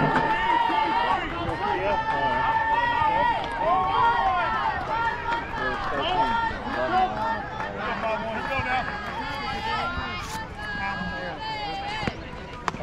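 Girls' voices cheering and calling out across the field, with several long drawn-out calls in the first few seconds.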